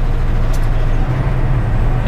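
Steady in-cab drone of a semi-truck cruising on the highway: low engine hum and road noise, with no change in pitch.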